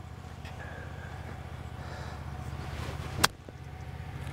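High-toe wedge striking a golf ball out of the rough: one sharp strike about three seconds in, over a steady low background hum.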